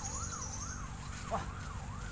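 A continuous siren-like warbling tone, sweeping up and down about two to three times a second.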